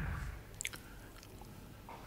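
Quiet bowling-alley background: a low rumble dies away in the first half-second, then a cluster of faint sharp clicks comes just over half a second in, with a few weaker ticks and knocks later.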